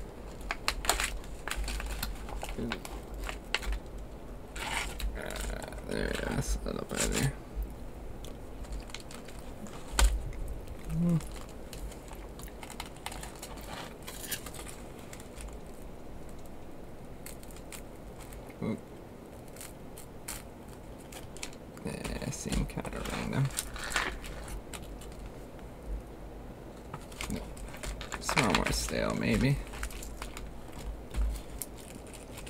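Foil-laminate MRE ration pouch crinkling and tearing as it is opened by hand and crackers are slid out, in scattered clusters of rustles and clicks, with a single sharper knock about a third of the way in.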